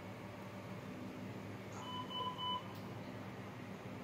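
Three short electronic beeps in quick succession from NICU equipment, such as a patient monitor alarm, about two seconds in, over a steady low machine hum.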